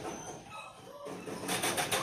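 Wire rabbit cage rattling as a clay feed bowl of pellets is handled and set inside, ending in a quick run of sharp rattling clicks.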